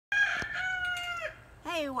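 A rooster crowing once: one long, high call that drops in pitch at the end.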